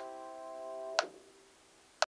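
Last chord of a slow piano piece held on an upright piano and fading, with a metronome clicking about once a second. The chord is released on the second click, about a second in, and the metronome's click is left on its own.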